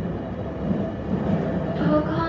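Steady low rumble of a passenger train running, heard from inside the carriage.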